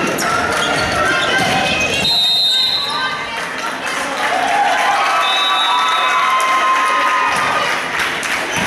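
Sneakers squeaking in short high squeals on a hardwood gym floor as volleyball players shift on court, with a few thuds of the ball being struck, over voices and shouts in the hall.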